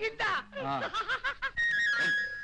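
A man snickering and chuckling in short bursts. Near the end, music comes in with a steady held high note.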